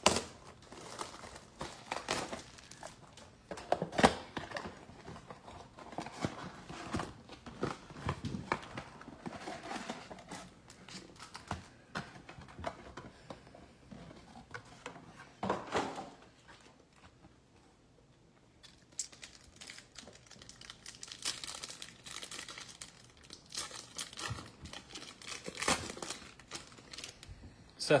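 A cardboard trading-card box being opened by hand and its packs torn open, with wrappers crinkling and scattered sharp knocks, the loudest about four seconds in.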